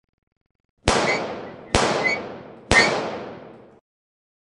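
Three sharp bangs, about a second apart, each dying away over about a second: an impact sound effect for the closing title card.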